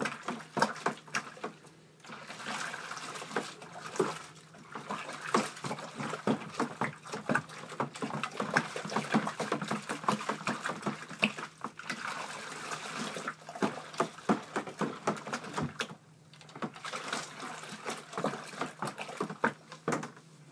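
Spoon stirring beer enhancer into water, sloshing with rapid clicks and knocks against the vessel, stopping briefly a few times; the stirring is to break up clumps of enhancer.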